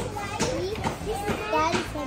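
Young children's voices chattering and babbling, with a few short knocks.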